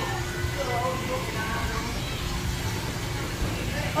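Background voices of people around a swimming pool, faint and indistinct, over a steady low rumble.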